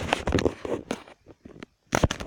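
Handling noise close to a phone's microphone: a sudden burst of rustling and scraping for about a second, then scattered knocks and clicks, with another loud cluster near the end as plastic toy figures are moved about.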